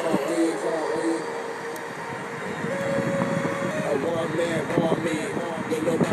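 Indistinct voices over a steady background rumble.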